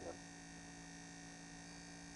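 Faint, steady electrical hum, with several constant tones and no other sound.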